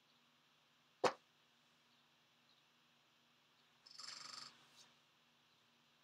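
A single sharp click about a second in, then a brief pitched sound lasting about half a second a little before the two-thirds point, over a faint steady hum; otherwise near silence.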